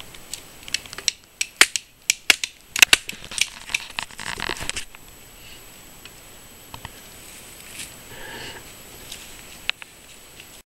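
Dry wood snapping and crackling as a stick and dry twigs are broken by hand: a rapid, irregular run of sharp cracks for about five seconds, then only faint handling sounds.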